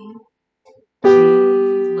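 Upright piano: a single G is struck firmly about a second in and left ringing, fading slowly. Before it, the tail of the previous note dies away into a short silence.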